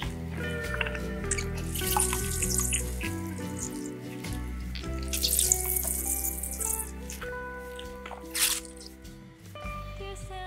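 Homemade plant milk squeezed by hand from a filter bag, running and splashing into a glass bowl in two longer spells, with a short splash near the end. Background music plays throughout.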